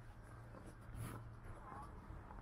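Faint outdoor ambience with a steady low hum, a single footstep on wet brick steps about a second in, and a few short faint chirps near the end.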